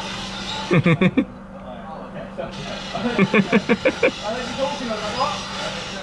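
Indistinct voices in short bursts over a steady low hum, which stops suddenly at the end.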